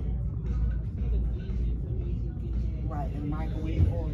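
Shop-floor background: a steady low rumble with indistinct voices of other people talking, one voice clearer about three seconds in.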